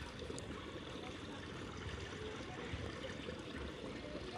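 Steady low rush of swimming-pool water trickling and lapping.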